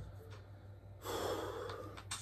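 A man's heavy breath out, a long breathy exhale starting about a second in and lasting about a second, as he catches his breath after rapping a verse.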